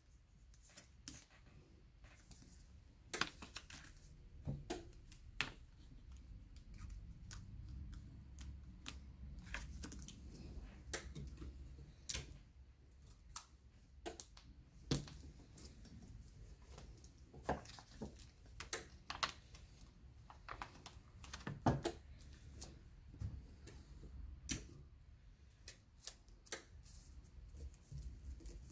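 Irregular light clicks and taps from hands handling heat tape and sublimation paper: tape pulled from a dispenser, torn off and pressed down onto the paper over a mouse pad.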